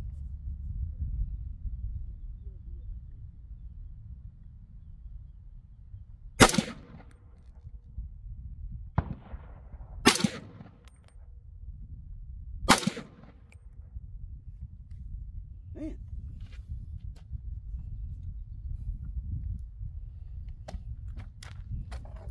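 A 7.62x39 AR-style rifle fired three times, one shot about every three seconds, starting about six seconds in. A steady low rumble runs between the shots.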